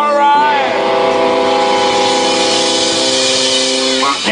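Live rock band: a sung line ends about half a second in, then the electric guitars hold one sustained chord under a wash of cymbals.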